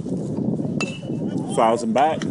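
A metal baseball bat strikes the ball once with a sharp ping that rings briefly, followed by a person's loud shout near the end, over low crowd and outdoor noise.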